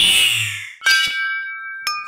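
Background music sting: a swish at the start, then a bell-like tone struck about a second in that rings on steadily, and is struck again near the end.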